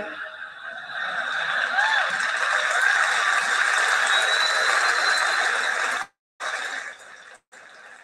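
A large audience applauding, with a few cheers rising over the clapping. The applause cuts off suddenly about six seconds in, then continues much fainter.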